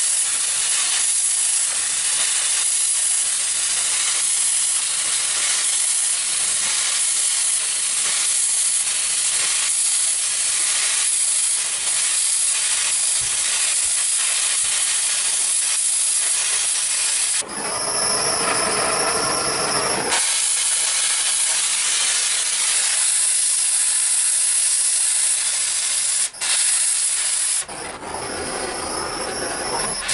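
Oxy-fuel cutting torch hissing steadily as it cuts through sheet steel. The hiss changes in character for about two seconds just past the middle and again near the end.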